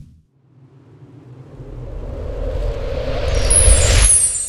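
Logo animation sound effect: a low rumbling whoosh that builds over about three seconds to a peak near the end, with a high shimmer coming in about three seconds in.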